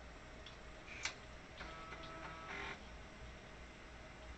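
Floppy disk drive working: a sharp click about a second in, then about a second of buzzing mechanical noise, over a steady low hum.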